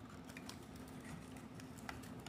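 Faint, scattered light clicks and taps of a plastic toy capsule ball being handled in the hands.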